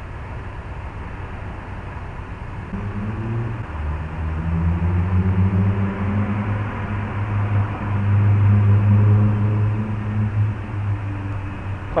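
A car engine running nearby, heard as a low hum over street noise. It swells from about three seconds in, is loudest a little past the middle, then eases off.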